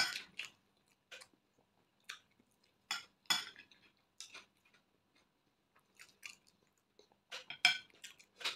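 Chewing and mouth sounds of a person eating bread with fried egg, picked up close by a clip-on microphone: scattered short smacks and clicks, loudest at the start and about three seconds in, with a quiet stretch in the middle.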